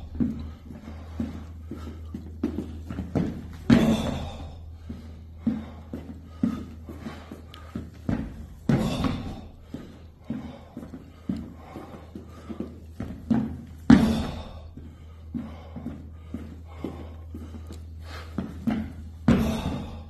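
Background music with a steady low bass, many light ticks and a loud hit about every five seconds.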